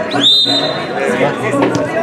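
Referee's whistle blown once: a single high blast that rises quickly to a steady pitch and lasts under a second, over spectators' voices and chatter.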